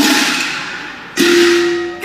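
Cantonese opera percussion between sung phrases: a sudden crash that rings down over about a second, then a second strike about a second in that rings on with a steady tone.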